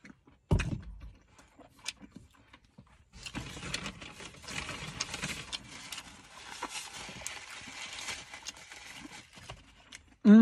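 A single thump about half a second in, then several seconds of paper crinkling and rustling close to the microphone, full of small crackles.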